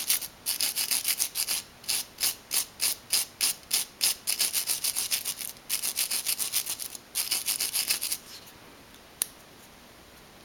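Wire brush scrubbing back and forth on the small metal contact of a door courtesy light switch to clean corrosion off it, in quick strokes about five a second. The scrubbing stops about eight seconds in, and a single tick follows near the end.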